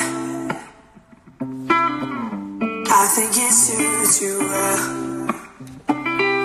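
A recorded acoustic-guitar ballad playing through a laptop's speakers, with plucked and strummed guitar notes. It drops almost to quiet about a second in, then comes back and fills out.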